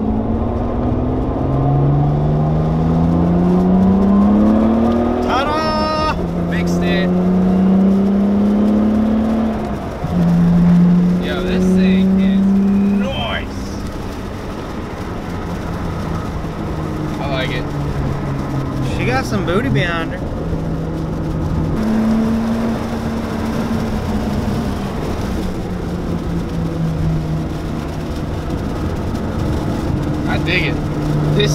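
Nissan R32 Skyline GT-R's twin-turbo RB26 straight-six heard from inside the cabin, accelerating hard through the gears, its pitch climbing and dropping at each upshift several times, then running more steadily in the second half. It is a test drive under boost to see whether the engine still cuts out from a weak battery; it pulls without breaking up.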